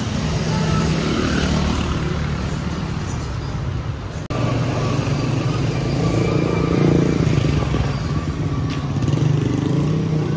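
Street traffic: motorcycle and car engines running and passing close by, with a brief dropout in the sound about four seconds in.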